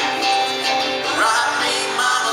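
Live band music: male voices singing together at one microphone over electric guitar and band.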